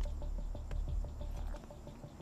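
Insects chirping in a fast, even pulse, as film ambience, over a low rumble that is loudest for the first second and a half and then fades.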